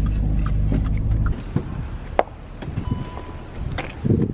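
Low rumble inside a car cabin, loudest for the first second or so and then settling to a quieter hum, with a few light clicks and knocks.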